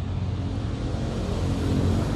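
Kubota E7 horizontal single-cylinder diesel engine on a walk-behind tractor running steadily, a low, even engine note.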